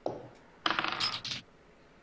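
Dice clattering onto a tabletop as they are rolled: a brief clatter at the start, then a longer rattle of about three-quarters of a second.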